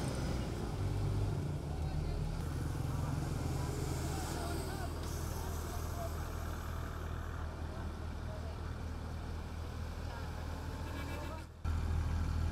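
Military vehicle engines running with a steady low drone as armoured trucks and gun-mounted pickups move along a street. Faint voices can be heard, and the sound cuts off and changes near the end.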